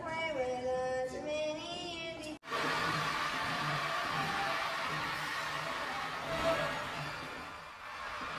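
A voice singing a melody, cut off abruptly about two and a half seconds in. Then a large crowd cheering and applauding, a dense steady din that slowly fades toward the end.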